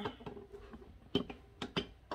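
A few light knocks and taps as a small sofa is turned over and handled on its newly fitted legs, mostly in the second half.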